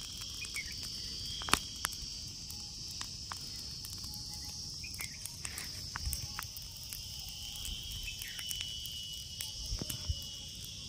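Steady, shrill insect chorus holding two high pitches throughout, with scattered small crackles and sharp clicks, the sharpest about one and a half seconds in.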